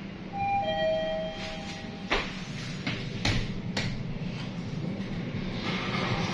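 Mitsubishi elevator's two-tone arrival chime: a higher note and then a lower one, ringing together for about a second and a half as the car reaches a floor. Three sharp clicks follow over the car's steady hum.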